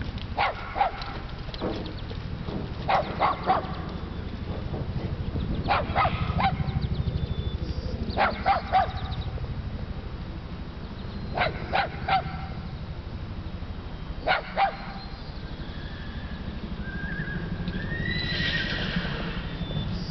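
A horse whinnying in short calls, two or three pulses at a time, repeated every few seconds over a steady low rumble.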